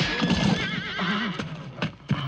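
Horses whinnying, one call quavering in pitch, with a few sharp hoof knocks among them.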